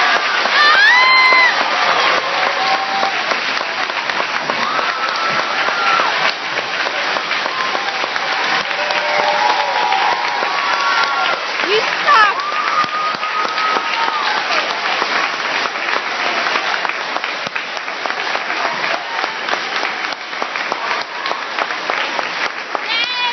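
Audience applauding steadily, with voices calling out and cheering over the clapping.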